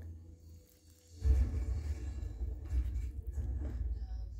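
Low rumbling handling noise on the phone's microphone as the phone is moved about. It starts about a second in.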